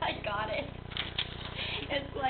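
Indistinct voices talking, with a couple of short clicks about a second in, over a steady low hum.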